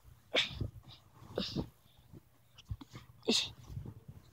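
Blanket and bedsheet being pulled and handled close to the microphone: fabric rustling in a few short bursts.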